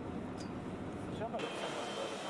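Airport apron ambience: a steady low mechanical rumble with indistinct voices. About two-thirds through it changes to a fuller, hissier hall ambience with a faint steady high tone.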